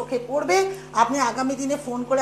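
A woman's voice speaking, with a steady low hum underneath.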